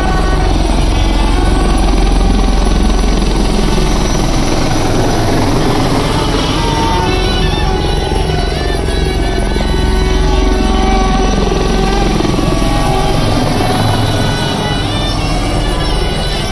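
Helicopter flying low overhead, its rotor beating loudest in the first few seconds and then easing off. Music plays throughout.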